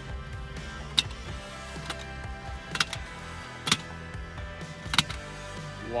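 Telescopic ladder being collapsed section by section: five sharp clacks, roughly a second apart, as each rung section slides down onto the next, over quiet background music.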